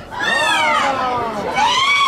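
Several high-pitched voices shouting loudly at once in long drawn-out calls that fall in pitch, with a fresh shout rising about one and a half seconds in.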